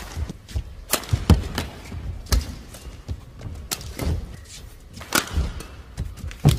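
Badminton rally: sharp racket strikes on the shuttlecock, about one every second, traded between the two players, with their shoes thudding on the court between the hits.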